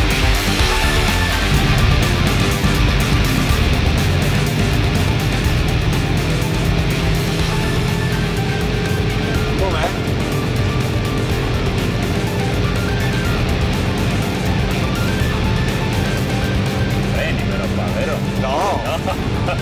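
Hyundai i30 Fastback N's turbocharged four-cylinder engine at a steady high cruise, heard from inside the cabin as a constant drone that rises slightly in pitch partway through, mixed with background music.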